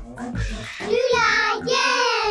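Cartoon child's voice of Pocoyo calling "Loula, yay!" in two short, high, sing-song calls, given a room-reverb effect. A low thud comes just before the calls.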